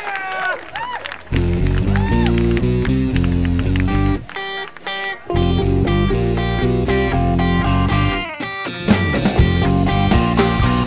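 Rock band's song intro: electric guitar and bass chords start about a second in, stop twice for a moment, and the drums come in with the full band near the end.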